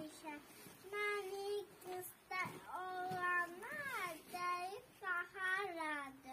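A young child singing unaccompanied in short phrases, with one long note near the middle that slides up and back down.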